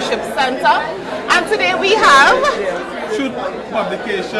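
Speech: a woman talking in an interview, with the chatter of other voices in a large hall behind.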